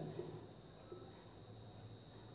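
Faint steady high-pitched whine in the background, with no other clear sound.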